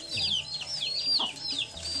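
Domestic chicks peeping continuously, a quick run of short high cheeps that fall in pitch, several a second.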